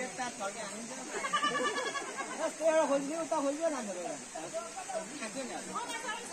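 People talking, several voices.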